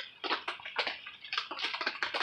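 Rain pattering on a plastic greenhouse cover: a dense, irregular run of light ticks and taps.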